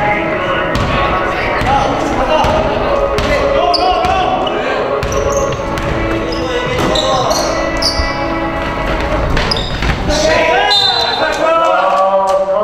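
A basketball dribbled on a hardwood gym floor, giving irregular bounces that echo in the hall, with players calling out over them.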